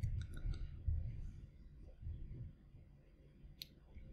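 A few faint clicks and low bumps: several clicks in the first half-second, then one more click near the end.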